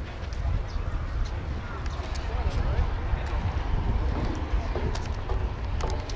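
Wind rumbling on the microphone, with indistinct chatter from people nearby and a few light clicks.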